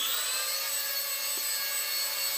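Micro electric RC Bell 222 Airwolf helicopter's motor and rotors finishing their spin-up for takeoff: the whine rises and levels off just after the start, then holds as a steady high whine with rotor rush.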